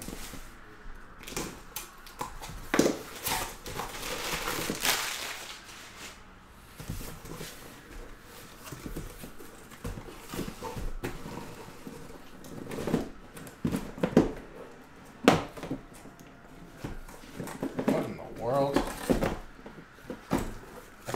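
A cardboard shipping case being cut open and handled: scraping and tearing of cardboard and tape, with sharp knocks as the shrink-wrapped card boxes inside are moved and set down.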